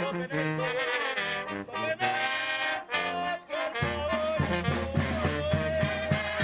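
Mexican brass banda playing, with trumpets and tuba, under a single solo melody line played into a microphone. About four seconds in the tuba bass and a steady beat come in.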